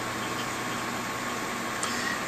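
Steady background hiss with a low hum and a faint thin high tone, unchanging throughout. The phone being flashed makes no sound of its own: a silent operation.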